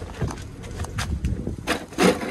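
A manual wheelchair being handled and set down: several light clicks and knocks of its frame over a low rumble.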